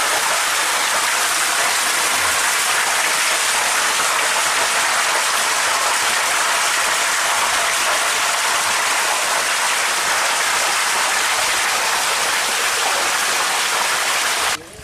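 Steady rushing hiss of water at a koi pond, one even sound with no breaks.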